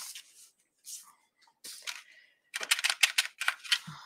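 A small flat paintbrush working wet acrylic paint on a wooden 2x4 board, blending wet into wet: a couple of faint brushes, then a quick run of short scratchy strokes in the second half.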